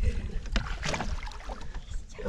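Lake water lapping and sloshing against the side of a fishing boat beside a landing net, with a few short knocks and a low wind rumble on the microphone.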